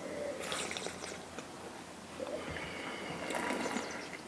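Faint sipping of red wine during a tasting, with two short, hissy slurps, one about half a second in and one near the end.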